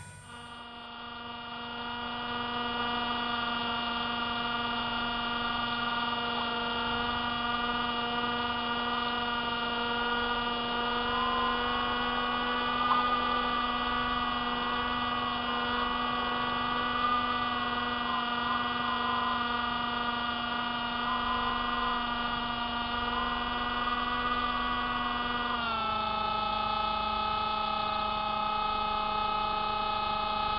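The Hubsan Spy Hawk FPV plane's electric motor and propeller whining steadily in flight, heard close up from its onboard camera. The whine builds over the first two seconds and drops to a lower pitch about 26 seconds in, as the throttle is eased.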